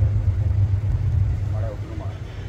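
Low, steady rumble, with a brief faint voice near the end.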